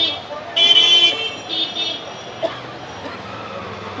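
Vehicle horns honking in busy street traffic: a loud, high-pitched honk about half a second in, then a shorter one about a second and a half in. Both are heard over steady traffic and crowd noise.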